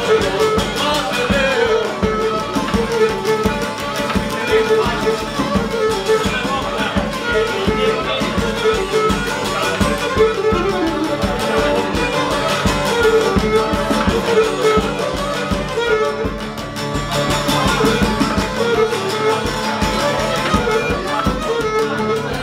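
Cretan syrtos played live: a bowed Cretan lyra carries a wavering melody over a strummed laouto and the steady beat of a barrel drum.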